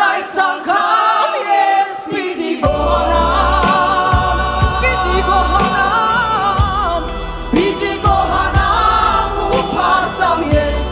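Worship band performing a song in Armenian: a woman's lead voice and a group of singers over keyboard. A low bass comes in under the voices about three seconds in, with a steady beat from then on.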